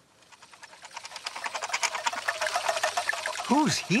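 Cartoon sound effect: a fast run of light ticking that swells steadily louder, then two short squeaky glides that each rise and fall in pitch, near the end.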